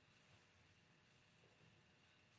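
Near silence: faint room tone with a steady high hiss.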